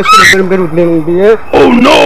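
A man talking loudly, his voice running on without a pause.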